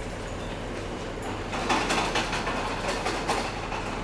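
Freight train's container wagons rolling away into a tunnel, wheels rattling on the track. It grows louder about a second in, with a run of sharp clicks and rattles, then settles back to a steady rumble.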